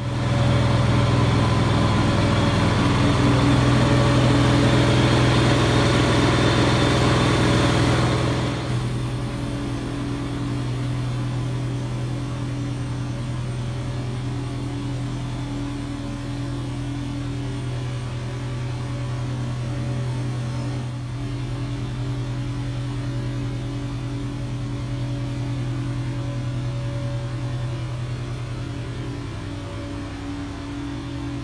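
Steady engine hum from the restoration company's service van, which has hoses run out. A loud hiss sits over the hum for the first eight seconds or so, then drops away, leaving a quieter, even hum.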